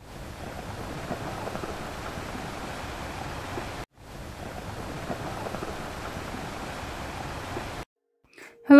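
A steady hiss of noise with no tune or voice in it, cut off briefly a little before halfway and again just before the end.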